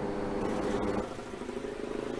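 Steady background of a vehicle engine running amid outdoor street noise, with a change in the sound about a second in.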